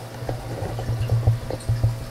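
Tunze Comline DOC Skimmer 9012 protein skimmer running, heard close up at its open collection cup: a steady low hum with irregular short pops and knocks.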